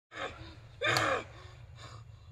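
A person gasping with the voice: a short gasp, then a louder, longer cry about a second in, over a steady low hum.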